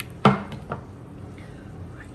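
A silicone spatula stirring a mayonnaise dressing in a small glass bowl, clinking and scraping against the glass, with a couple of short knocks in the first second.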